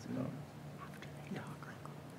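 Quiet, murmured conversation, partly whispered, with a steady low hum beneath it.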